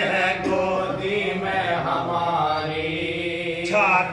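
A group of men chanting an Urdu marsiya (elegy) together without instruments, drawing out one long held note. A new sung phrase begins near the end.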